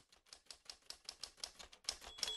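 Typewriter sound effect: a quick, even run of faint key clicks as a title is typed out letter by letter.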